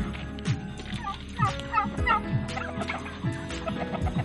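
A turkey gobbling, a quick warbling rattle about a second in, over background music with a steady beat.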